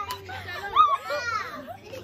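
Young women's voices laughing and calling out in high, gliding tones, loudest a little under a second in.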